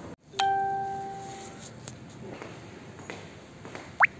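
Elevator arrival chime: a single ding about half a second in that rings and fades over a second or so, followed by a few faint footsteps.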